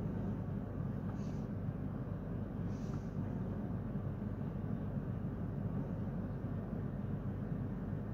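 Steady low hum and rumble inside a standing regional passenger train, from its ventilation and onboard equipment running, with two faint brief hisses about one and three seconds in.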